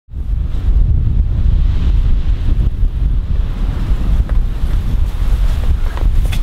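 Wind buffeting the microphone: a loud, rough, fluctuating low rumble.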